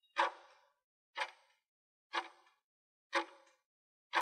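Countdown-timer tick sound effect: four sharp, clock-like ticks, one each second, as the answer timer counts down.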